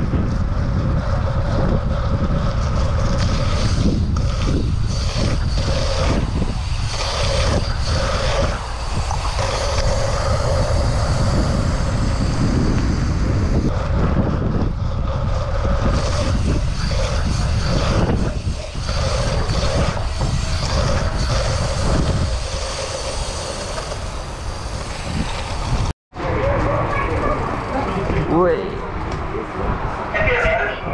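Wind rushing over the camera microphone and the tyres of a BMX bike rolling fast over a wet track surface, one steady loud roar. It cuts off abruptly about four seconds before the end, and a quieter, more varied sound follows.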